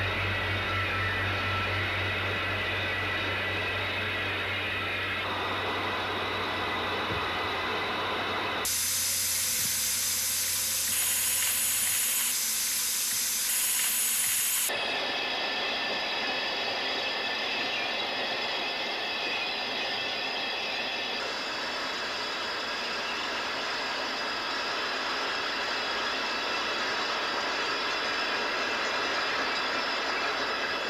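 Electronic soundscape score: a steady rushing noise with held high tones and, for the first twelve seconds or so, a low hum. Its layers change abruptly every few seconds, turning bright and hissy for several seconds about a third of the way in.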